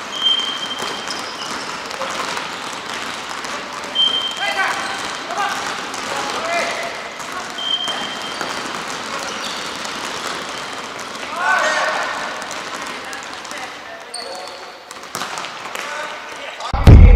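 Indoor futsal game on a wooden gym court: players shouting to each other, sneakers squeaking on the floor three times, and a few sharp ball kicks near the end.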